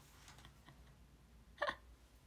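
Mostly quiet room with a single short breathy laugh from a young woman, a stifled hiccup-like catch of breath, about one and a half seconds in.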